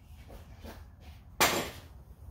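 Pneumatic nail gun firing once, about one and a half seconds in: a sharp crack followed by a brief hiss of air. A few faint knocks come before it.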